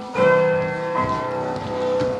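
Piano music: a chord struck just after the start and another about a second in, both left ringing and slowly fading.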